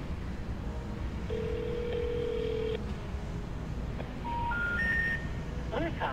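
Telephone call audio heard through a mobile phone's earpiece. A single line tone holds for about a second and a half, then three short rising tones sound about two seconds later: the special information tone that signals the number is disconnected or no longer in service.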